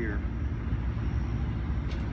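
Wind buffeting an outdoor microphone: a steady low rumble that rises and falls quickly, with no break.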